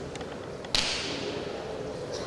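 A single sharp crack about three-quarters of a second in, with its echo dying away over about half a second in a large hall, over a steady murmur of hall background.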